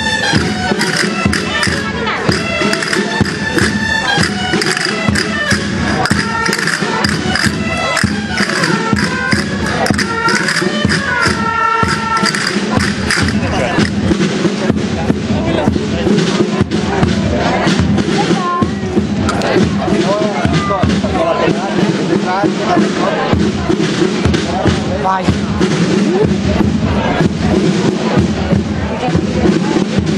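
Live folk dance music: a reedy wind instrument plays the tune over a steady low drone, with a fast, even percussive beat that is sharpest in the first half. Crowd voices run underneath.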